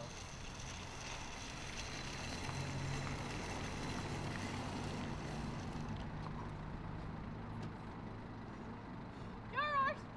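A steady rumble of a shopping trolley rolling fast across a tarmac car park, with a small car's engine running, then a short voiced shout near the end.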